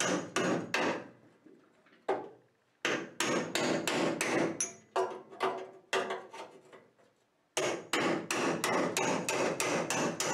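Hammer striking a steel chisel held against the rusty sheet-metal panel of a Ford Model A's rear body, cutting the old panels apart. The blows come in runs, about three a second, with short pauses between runs and a longer one a little past halfway.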